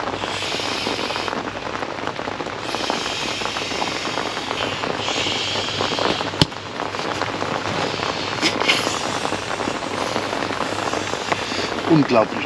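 A man blowing by mouth into the valve of an inflatable catfish buoy: three long breaths of hissing air in the first six seconds, then a single sharp click. Rain falls steadily on the tent throughout.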